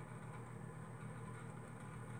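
Faint room tone: a steady low hum with light hiss and a thin high whine, and no distinct events.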